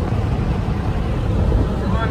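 A steady low rumble of engine and road noise inside a moving car's cabin.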